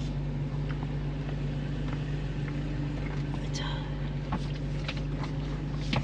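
Steady low hum of a car's engine idling, heard from inside the cabin, with a few faint clicks and taps.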